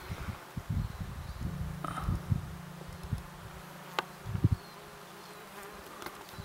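A flying insect buzzing close to the microphone, its low drone coming and going. Scattered low thumps and a sharp click about four seconds in lie over it.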